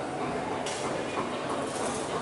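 General hubbub of a waiting crowd in a large hall, with a high steady hiss that starts suddenly under a second in.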